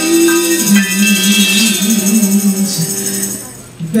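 Live small jazz band with a woman singing a long, wavering held note over piano, upright bass and shaken percussion. The music thins out near the end, then a sharp band accent and a new full chord come in as the next sung phrase begins.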